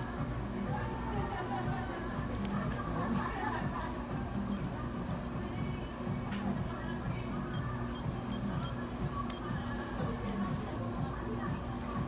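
Store background music playing steadily under faint talk, with a single short high electronic beep about four and a half seconds in and a quick run of four or five more near the eight-second mark.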